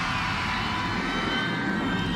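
A sustained synthesizer drone from the concert's stage music: several held tones with a slight upward drift in pitch and no beat.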